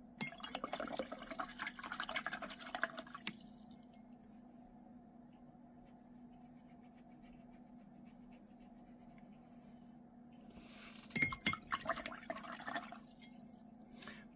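A watercolour brush rinsed in a glass jar of water: swishing with small clinks against the glass, once at the start and again near the end.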